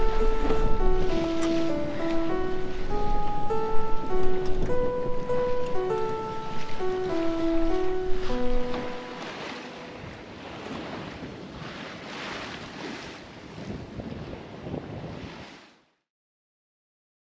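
A simple melody of single notes over the rush of waves against a sailboat's hull. The melody stops about halfway through, leaving the waves washing in several swells, and the sound cuts off just before the end.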